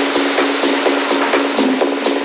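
Techno/house DJ mix going into a breakdown: the kick drum and bass drop out suddenly at the start, leaving a loud, bright wash of noise with a steady high tone and quick rhythmic ticks over a filtered-thin beat.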